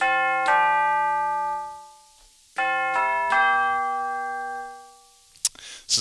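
Tubular bells sound from a KAT MalletKAT 8.5 electronic mallet controller and its GigKAT 2 module, struck with mallets: two chime notes, then three more about two and a half seconds in. Each note rings out and dies away within a couple of seconds, the sustain pedal off.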